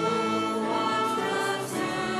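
A mixed choir singing a hymn in held notes, accompanied by piano.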